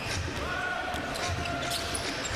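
Basketball dribbled on a hardwood court, low bounces about every half second, over arena crowd noise. A steady held tone runs through the middle.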